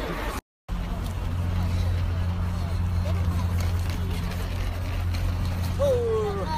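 A brief break in the sound about half a second in, then a steady low hum, with faint voices over it.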